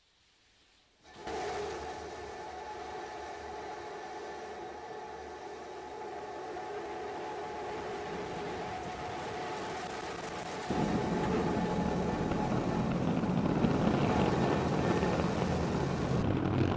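The three Raptor engines of SpaceX's Starship SN15 prototype firing at liftoff. A steady rumble with a few held tones starts suddenly about a second in, then grows louder and deeper about ten seconds in as the rocket climbs.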